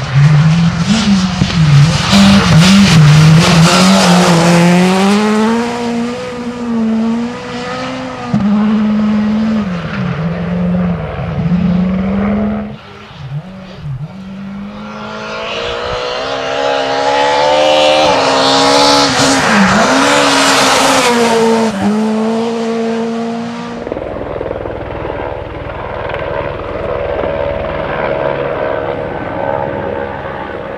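Skoda Fabia S2000 rally car's two-litre four-cylinder engine at full throttle, its pitch climbing and dropping again and again through gear changes and lifts as it passes close by. It comes up loud again about halfway through, then cuts suddenly to the same engine heard far off.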